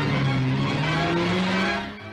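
Racing car engine accelerating, its note rising steadily in pitch, mixed with newsreel background music; it fades out near the end.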